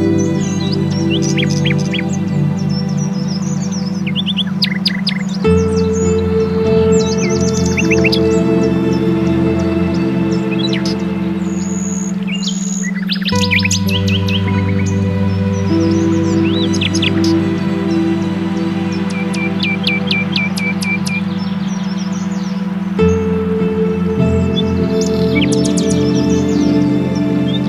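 Ambient meditation music: sustained synth chords that change every eight seconds or so over a steady low tone carrying the track's beta-wave binaural beat, with birdsong mixed in, short chirps throughout and a quick trill past the middle.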